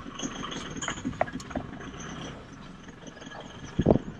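Toyota Hilux pickup moving slowly over a rough dirt track, heard from inside the cab: low engine and tyre rumble with scattered small knocks and rattles, and a louder couple of thumps near the end.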